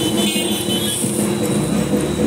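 Steady street traffic noise with motorbikes and scooters, mixed with music.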